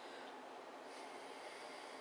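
A person's soft breath through the nose, a faint hiss starting about a second in and lasting about a second, over a steady low background hiss.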